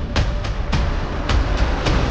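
Dramatic background music score: sharp percussive hits about three to four times a second over a low, steady drone.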